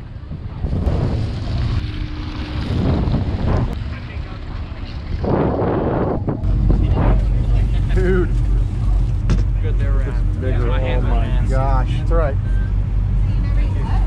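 Wind buffeting the microphone over water noise at a boat's rail, then, about six seconds in, a steady low drone from the fishing boat's engine heard inside the galley, with voices behind it.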